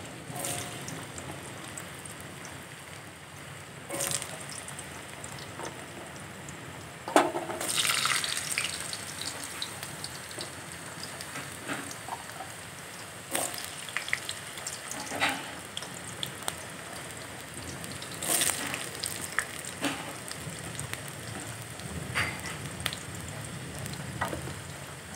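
Cubed raw potatoes frying in hot mustard oil in a steel kadai: a steady sizzle. Several louder bursts of crackling come as more potato pieces are dropped into the oil.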